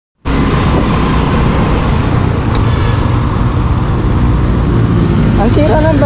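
Motorcycle engine running steadily while riding, with road noise. A man's voice calls out near the end.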